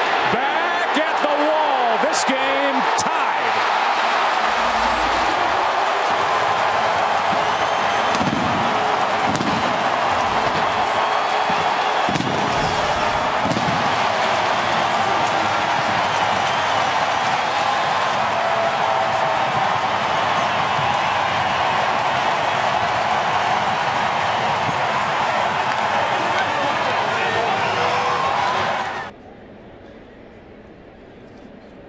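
Large stadium crowd cheering steadily after a home run, with a few booms from home-run fireworks around the middle. The cheering cuts off suddenly near the end.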